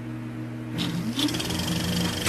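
Old film projector sound effect: a steady motor hum, then about a second in the projector starts running with a short rising whine and a fast mechanical rattle.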